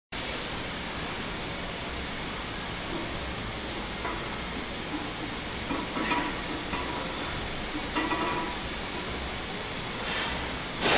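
Steady hiss of a large gym's room noise, with a few faint brief sounds about four, six and eight seconds in.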